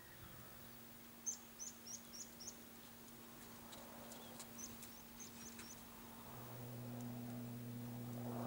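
A small bird chirping faintly outdoors: a quick run of about five high chirps about a second in, and another run about five seconds in. A low steady hum underneath grows louder near the end.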